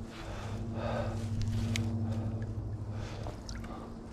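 Water sloshing and gurgling as a landing net is lowered into the river to release a small pike, with a low steady hum underneath and a single click about halfway through.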